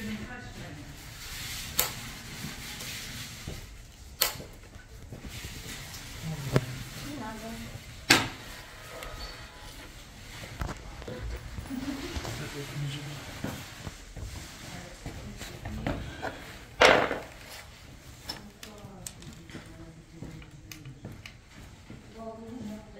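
Plastic clicks and snaps from a fibre-optic fusion splicer as optical fibres are seated and its fibre clamps and lid are closed, with light handling noise between. There are four sharp clicks, the loudest near the end.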